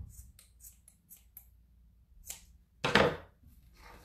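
Scissors making a quick run of small snips through the fabric end of a stuffed sock. Near the end comes a single louder knock.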